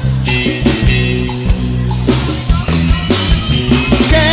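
A live brega band playing an instrumental passage, with a drum kit beating time under a bass line and electric guitar.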